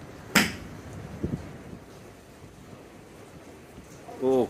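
A golf iron striking a ball off a driving-range mat: one sharp, crisp click less than half a second in, over steady wind noise.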